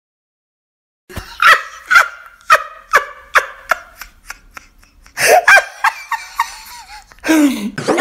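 Dead silence for about a second, then a person laughing in a run of short ha-ha bursts about every half second that gradually fade. More laughing voice sounds follow, one wavering upward and one falling near the end.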